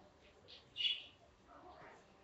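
A small bird's short high chirp about a second in, with a fainter chirp just before it.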